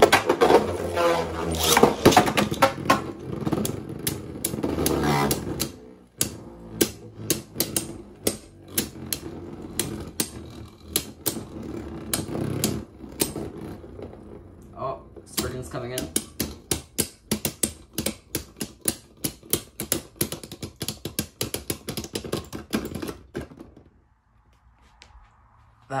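Two Beyblade Burst tops, Astral Spriggan and Golden Dynamite Belial, spinning and battling in a plastic stadium: a loud whirring scrape for the first few seconds, then many sharp clicks as the tops strike each other and the stadium, thinning out until both spin out and stop near the end.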